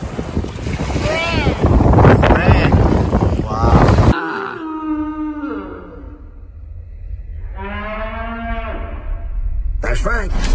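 About four seconds of loud rushing noise with a few squealing glides cut off abruptly, followed by two long, low moo-like calls.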